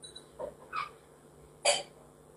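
A man coughs once, short and sharp, near the end, after a couple of fainter short sounds.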